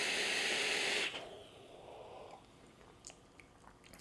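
Steady hiss of a draw through a Kanger Dripbox squonk mod's RDA, air and vapour pulled through the atomizer. It stops about a second in.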